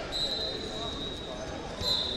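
Distant voices echoing in a large sports hall. A high, thin steady tone sounds for about a second just after the start and again near the end.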